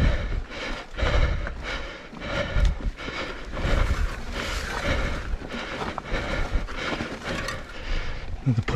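Mountain bike clattering over a rocky trail: tyres knocking on stones and the bike rattling in a fast, irregular run of knocks, with uneven low rumbles throughout.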